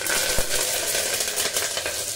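Fresh curry leaves sizzling and spluttering loudly in hot oil in an aluminium pressure cooker, a dense crackling hiss of tempering. A brief low knock sounds about half a second in.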